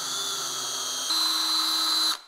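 Cordless drill running at speed, a twist bit drilling out a stripped latch screw in a steel tailgate. A steady whine that shifts pitch and grows a little louder about halfway through.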